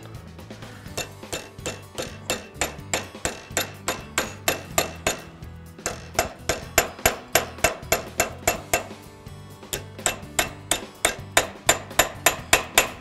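Nylon-faced insert hammer (HMR-7) striking a brass bracelet bar over a steel forming stake, about three blows a second in runs with two short pauses. The bar is being bent into the bracelet's curve.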